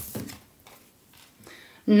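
A tarot card slapped down onto a wooden tabletop, one short sharp sound at the start, followed by faint, quiet handling of the deck.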